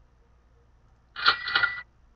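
A short, loud computer sound effect, two quick clicks a quarter second apart over a brief high tone, as a PowerPoint slide show launches.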